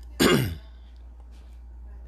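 A man clears his throat with one short, harsh cough just after the start, its pitch dropping as it ends. A faint steady low hum remains afterwards.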